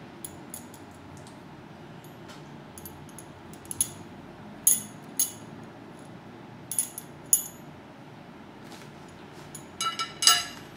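Two cast metal puzzle pieces clinking against each other as they are handled and fitted back together: scattered sharp metallic clinks with a brief ring, the loudest in the middle, and a quick run of them near the end, over a steady low hiss.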